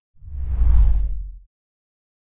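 Logo-reveal whoosh sound effect with a deep rumble: one swell that builds to a peak just under a second in and dies away by about a second and a half.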